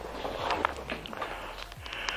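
Faint scattered clicks and rustles from a camera being moved and handled, over a low steady hum.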